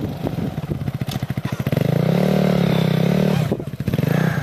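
Honda CRF250R dirt bike's single-cylinder four-stroke engine ticking over at low revs, then revving up about two seconds in, held briefly before falling back near the end.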